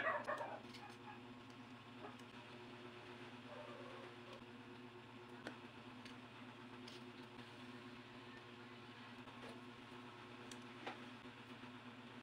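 Faint steady hum with a few light clicks and taps from hands handling paper flower stems and a plastic glue bottle. There is a short, louder burst of sound right at the start.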